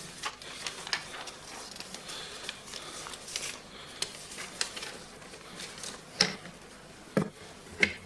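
Paper voting envelopes and ballot papers being handled and counted on a table: scattered rustling and light clicks, with a couple of sharper knocks near the end.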